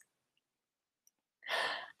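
Dead silence, then about one and a half seconds in a short, breathy in-breath from a woman about to speak.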